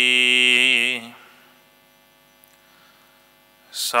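A man's chanting voice holding a long, slightly wavering note that ends about a second in. A faint steady hum follows until the chanting starts again near the end.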